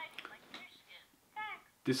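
Quiet, short fragments of speech in a high-pitched voice, with a man's voice starting to speak near the end.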